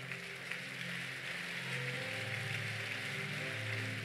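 Soft background music of held low chords that change about halfway through, over a steady hiss of crowd noise in the hall.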